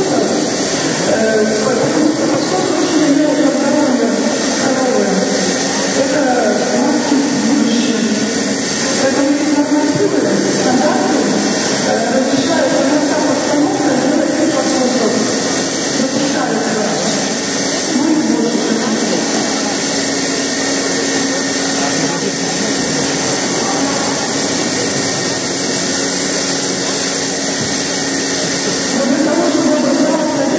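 Voices talking over the steady hum and hiss of a machine milking unit running on a cow.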